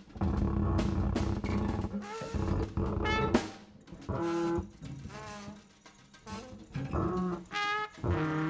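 Free improvised jazz from a cornet, cello, double bass and drum kit: a dense low rumble at first, then short, broken pitched phrases, some bending in pitch, with scattered drum and cymbal hits and gaps between them.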